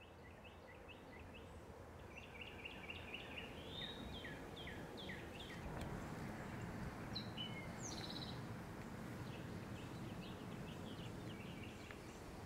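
Songbirds chirping faintly in woodland, in quick runs of short notes with a higher call about seven seconds in, over a steady outdoor background hiss.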